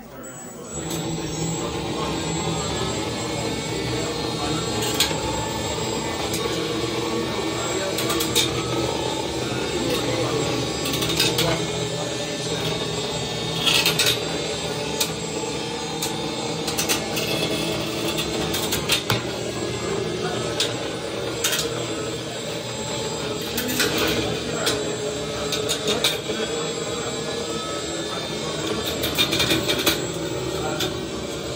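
Antweight combat robot's horizontal bar spinner weapon running with a steady motor whine, spun up about half a second in. A dozen or so sharp clacks ring out as the spinning bar strikes an old plastic robot frame and the arena walls.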